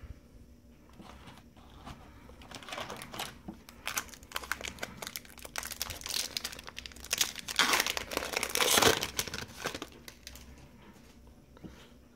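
Foil wrapper of a Bowman Chrome baseball-card pack crinkling as it is handled and torn open, loudest about six to nine seconds in.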